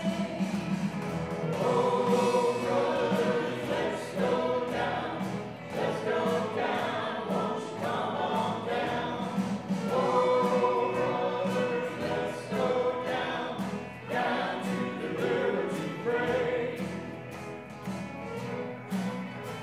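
Live band music: a violin carrying a bending melody over strummed guitars and keyboard accompaniment, played without a break.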